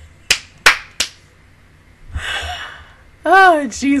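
Three sharp hand claps, about three a second, in the first second. A breathy exhale follows, then a loud voiced exclamation falling in pitch near the end.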